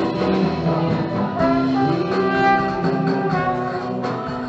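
Live band music in an instrumental passage: a trombone plays a stepwise melody over the band's backing, with no singing.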